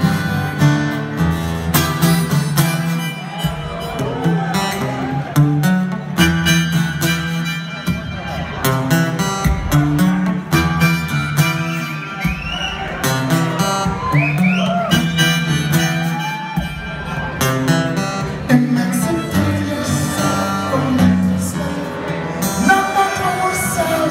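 A band plays live, with acoustic guitar and a harmonica carrying the melody in long, bending notes over a steady low bass line.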